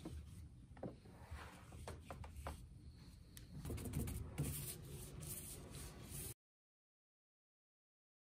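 Faint taps, knocks and brushing of hands and a paintbrush working paint over a wooden board, over a low steady hum; the sound cuts off abruptly about six seconds in and there is silence.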